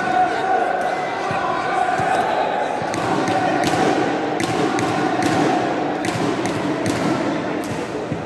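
Badminton hall ambience: a steady hubbub of voices, with sharp racket hits on shuttlecocks about twice a second from about three seconds in.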